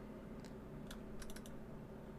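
A few faint clicks from a computer being operated, a quick cluster of them about a second in, over low room tone.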